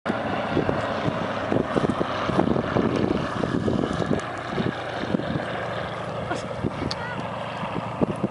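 Spitfire's V12 piston engine droning steadily as the fighter flies past, with wind buffeting the microphone in short low thumps throughout. A man shouts once near the end.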